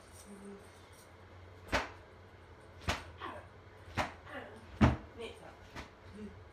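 Four sharp smacks about a second apart, the last the loudest, each followed by a short falling cry: a spanking being given as punishment.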